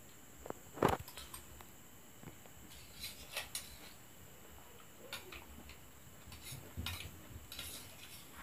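A spoon clinking and scraping against metal dishes as curry is served onto a steel plate: a few scattered clinks, the loudest about a second in and a small cluster near the end.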